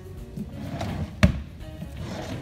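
A drawer being pushed shut with one sharp knock about a second in, with a lighter knock before it, over soft background music.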